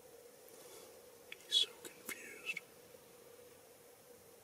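A person whispering a few words over about two seconds, the loudest sound coming about a second and a half in, over a faint steady hum.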